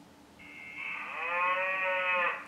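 Wonder Workshop Dash robot playing a sound effect through its small speaker. It is a drawn-out pitched call that starts about half a second in, rises and then falls in pitch, and lasts about a second and a half.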